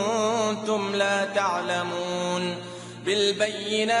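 A solo voice chanting a slow, ornamented melody with wavering, drawn-out notes, in the style of an Islamic chant, with a short break about three seconds in.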